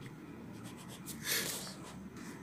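Pencil writing on notebook paper: a few short, faint scratching strokes as a short heading is written and underlined, the loudest stroke about a second and a half in.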